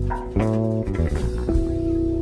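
Live improvised jazz: electric guitar and bass guitar playing plucked notes that ring on, with a new note about half a second in and another near a second and a half, and light drums underneath.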